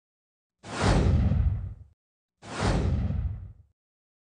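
Two whoosh sound effects, each a little over a second long, with a deep rumble under a hiss that fades away; the second follows about half a second after the first ends.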